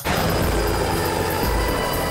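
Movie soundtrack playing loud: music under a dense, steady noise with a deep rumble, cutting in suddenly at the start.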